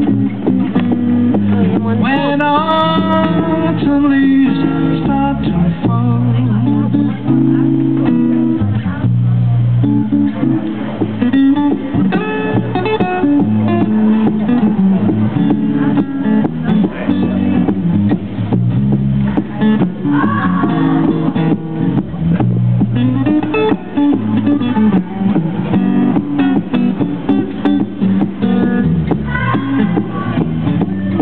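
Acoustic blues guitar playing a walking bass line under chords, with a harmonica playing lead over it; its notes bend up and down near the start and again about two-thirds of the way through.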